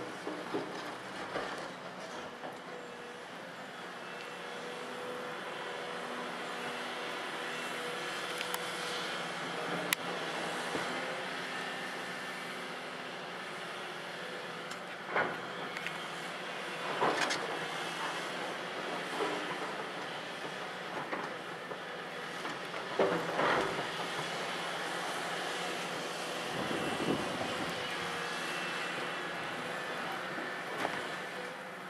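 Volvo EC700B LC crawler excavator's diesel engine running steadily under load, with a constant hydraulic whine. The steel bucket clanks and scrapes against broken limestone several times in the second half as it digs into the rock pile.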